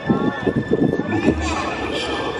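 Castle projection show soundtrack played over outdoor park loudspeakers: dramatic voice and sound effects, with a quick run of low knocks through the first half and a higher sweeping sound near the end.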